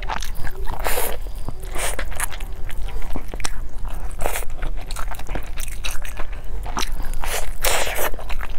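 Close-up bites and chewing into a baked food with a crunchy crust: several crisp crunches with small crackling clicks between, the biggest crunch near the end.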